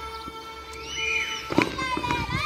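Tulum (Black Sea bagpipe) playing a horon dance tune in held, ornamented notes, with a sharp knock about one and a half seconds in.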